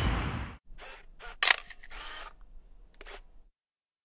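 Camera shutters clicking several times, the loudest about a second and a half in, over faint background noise. Crowd chatter at the start breaks off abruptly, and the sound cuts to silence about three and a half seconds in.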